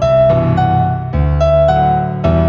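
Instrumental piano piece: a melody of single notes played over held chords in the bass, a new note struck every half second or so.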